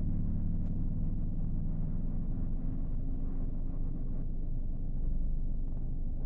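Low, steady rumble of a car's engine and road noise, heard from inside the cabin as the car drives.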